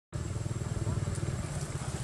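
A motorcycle engine running close by, a steady, rapid low pulse.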